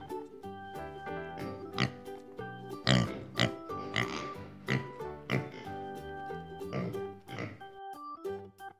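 Recorded pig sound: short oinks and grunts repeating about once a second over background music with steady notes.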